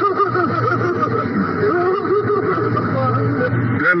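A man laughing, a run of repeated short pitched calls, a little stupid laugh, over a steady low hum.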